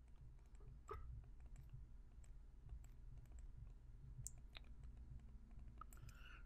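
Near silence: a faint low hum with a few faint, sharp clicks from a stylus tapping on a pen tablet while an equation is handwritten.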